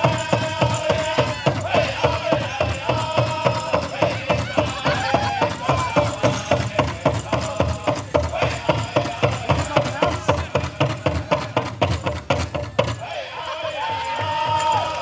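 Pow wow drum group singing high, wavering vocals over a large powwow drum beaten in a steady fast beat, about four strokes a second. The drumming stops about a second before the end.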